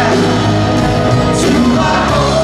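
Live rock band playing loudly: electric guitar, electric bass and drum kit, with a sung vocal line over them.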